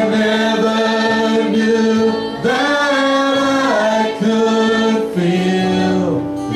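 Live church worship music: singers holding long notes over the band in a slow song.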